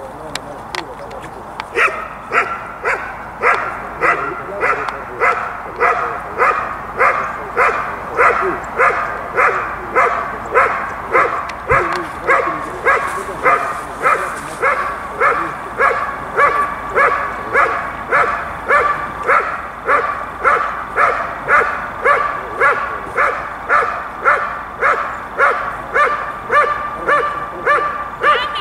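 A dog barking steadily at a hidden helper in a protection-trial blind, the hold-and-bark that marks the helper as found. The barks are loud and evenly spaced, a little under two a second, and start about two seconds in.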